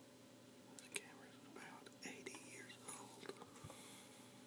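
Soft whispering, with one sharp click about a second in.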